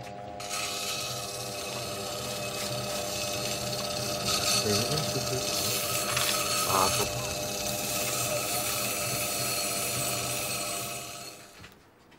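A lapidary grinding wheel runs with a steady hum while tourmaline is ground and polished against it. The grinding is louder for a few seconds in the middle, and the sound fades out just before the end.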